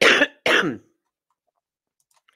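A person coughing twice in quick succession, clearing the throat; the second cough trails off in a falling voiced sound.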